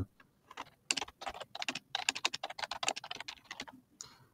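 Typing on a computer keyboard: a quick, uneven run of key clicks that starts about half a second in and stops just before the end.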